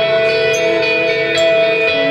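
Live band music: violin and electric guitars holding long, steady notes.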